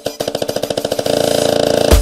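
Tribal dance-music build-up: a repeated pitched hit speeds up into a fast roll, growing louder. It ends in a heavy bass hit as the beat drops back in.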